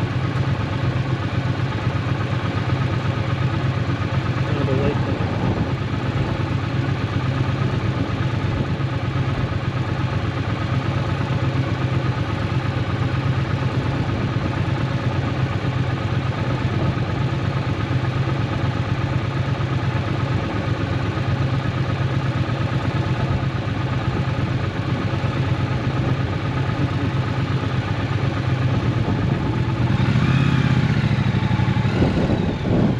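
Triumph Bonneville T120's 1200 cc parallel-twin engine idling steadily while the bike waits in slow traffic.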